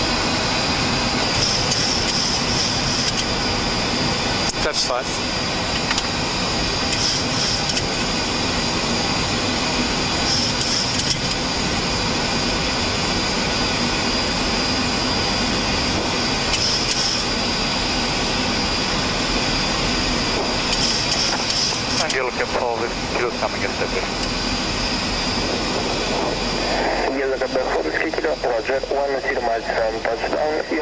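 Steady flight-deck noise of a Boeing 737-700 on approach: a constant rush of airflow and engine noise. Voices come in over it in the last few seconds.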